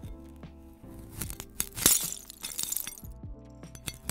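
AI-generated (Veo 3) ASMR sound of a knife blade cutting down through a glass sculpture, which cracks and shatters with crackling and tinkling of glass. The loudest crack comes about two seconds in. Background music with steady tones runs underneath.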